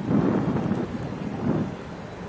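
Wind buffeting the camera microphone, a low rumble that swells in gusts, strongest just after the start and again about a second and a half in.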